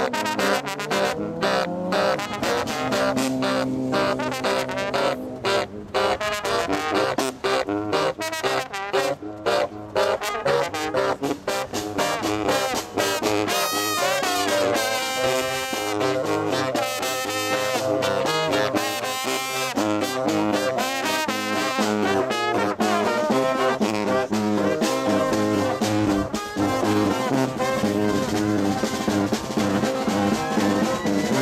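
A marching brass band playing up-tempo music in full ensemble: trumpet, trombone, sousaphone and baritone saxophone, with a snare drum keeping the beat.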